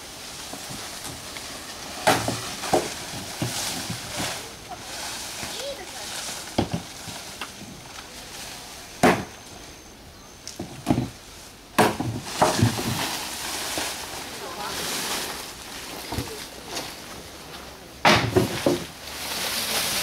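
Dry fan palm fronds rustling and crackling as they are handled and dragged, with several sharp crackles at intervals, over indistinct voices.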